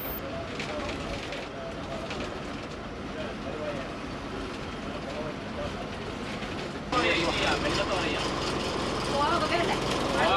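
A bus engine running steadily, heard from inside the cabin, with faint voices. About seven seconds in the sound suddenly gets louder and fuller, and the voices become clearer.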